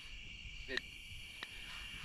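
A steady high-pitched chorus of crickets.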